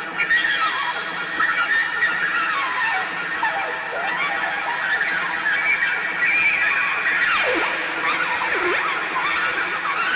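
Experimental ambient music from an effects-processed electric trumpet: sliding, whinny-like tones over a dense sustained drone, with two long downward glides near the end.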